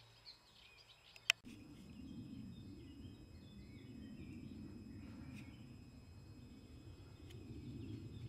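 Low rumbling noise of riding a bicycle along a sandy path, starting about a second and a half in just after a single click, with birds chirping faintly over it.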